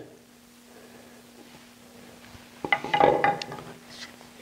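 Steel woodturning tools clinking and knocking as they are handled and set down: a quick cluster of small clicks with a brief metallic ring about three seconds in. A faint steady hum runs underneath.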